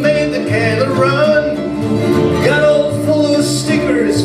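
Acoustic string trio playing a country folk song live: plucked upright bass notes under strummed acoustic guitar and mandolin.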